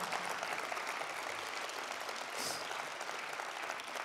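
Audience applauding, a steady patter of many hands clapping that eases slightly toward the end.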